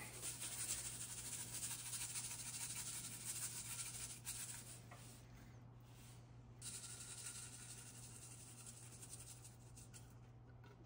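Faint, fast rattling hiss of a seasoning shaker being shaken over raw baby back ribs, granules of Tuscan seasoning pattering onto the meat, in three spells with short breaks after about four seconds and again past the middle. A steady low hum runs underneath.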